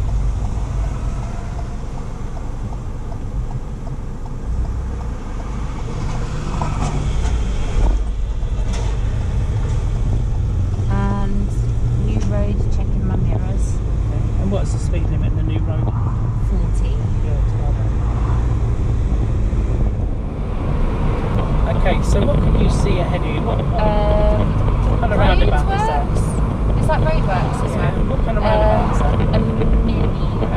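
Steady low rumble of a car's engine and tyres heard from inside the cabin while it is driven, with voices talking over it in the second half.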